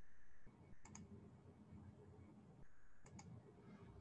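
Near silence with faint clicks: a pair about a second in and another pair a little after three seconds.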